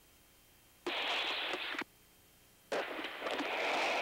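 Two bursts of hiss on the crew intercom audio, each switching on and off abruptly, the way an open microphone channel cuts in and out. The first is about a second long, and the second begins shortly after and runs longer.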